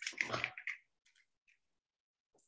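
A voice trailing off in the first second, then near silence.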